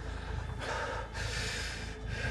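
A person breathing hard: a sharp breath about half a second in, then a longer one from about a second in, over a low steady hum.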